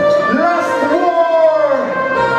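A male vocalist singing into a microphone with a live reggae band, holding long notes that bend and fall in pitch, with the band's instruments fainter underneath.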